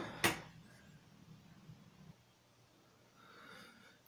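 A single short, sharp click about a quarter second in, then faint room tone that falls to near silence about two seconds in.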